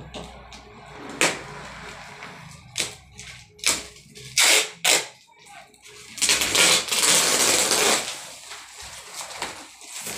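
Clear plastic wrapping on a rolled, compressed mattress crinkling and rustling as it is handled: a string of short crackles, then a longer spell of rustling in the second half.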